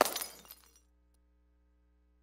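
Sudden glass-shattering sound effect: one loud crash with tinkling that dies away within about a second.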